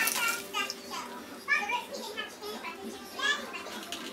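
A toddler girl's voice in short, high-pitched phrases of babble.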